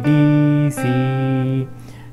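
Electric guitar in a clean tone playing two held single notes, D then the C just below it, each a little under a second long; the second note stops about three-quarters of the way through.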